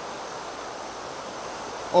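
Steady rush of fast, churning river water at a spillway.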